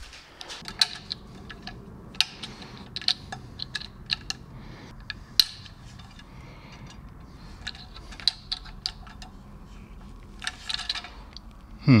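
Irregular light clicks and taps of plastic from handling a white plastic RF Elements horn antenna, fingers working at the small trapdoor covers on its side, with a quick run of clicks near the end.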